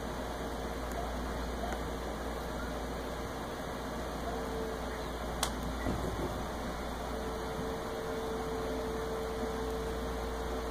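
Steady mechanical hum of room noise with a faint held tone, and a single sharp click about five and a half seconds in.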